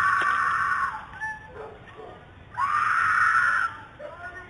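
A woman screaming in distress, picked up by a doorbell camera's microphone: one long, high scream right at the start and a second about two and a half seconds in, each lasting about a second.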